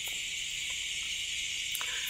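Steady chorus of insects, a continuous high-pitched buzz with no break.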